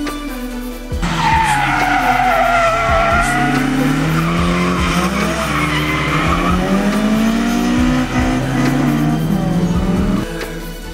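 Drift cars sliding on a track: tyres squealing in long screeches whose pitch wavers up and down, over engines revving and falling back. It comes in about a second in, after a stretch of rap music, and cuts off at the end.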